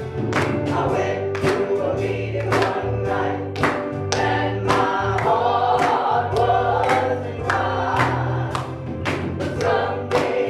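Live gospel worship music: electric keyboard and drum kit keeping a steady beat, with voices singing over them.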